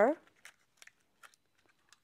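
A few faint, short plastic clicks and rustles as a disposable probe cover is fitted onto a tympanic ear thermometer's probe.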